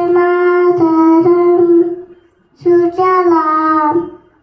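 A young child singing into a microphone with no accompaniment: two long held phrases, the first lasting about two seconds, the second starting just under three seconds in.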